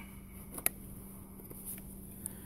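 Knife blade cutting wood while a notch in a stick is cleaned out: one sharp click about two-thirds of a second in, with a fainter one just before it, over a faint steady hum.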